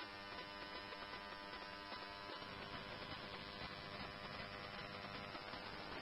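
Faint steady electrical hum with light static on a fire department radio channel, idle between transmissions.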